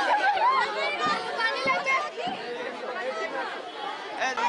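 Chatter of a crowd of teenage girls talking and calling out over one another, excited and celebrating, growing a little quieter toward the end.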